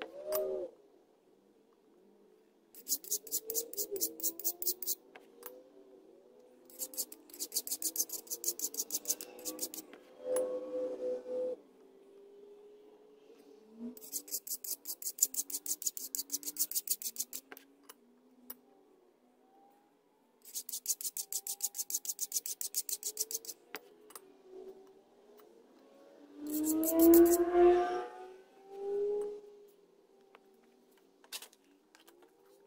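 Hand file rasping across a small metal casting in quick, short strokes, in five bursts of a few seconds each, deburring it to sit flat. Faint background music runs underneath, with a louder hum-like sound near the end.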